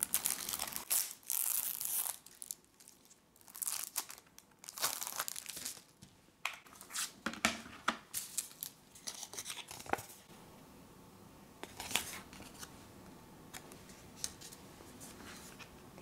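Plastic shrink-wrap being torn and crinkled off a CD jewel case, in repeated bursts of crackling over the first ten seconds or so. It then goes quieter, with a single sharp click of the plastic case about twelve seconds in.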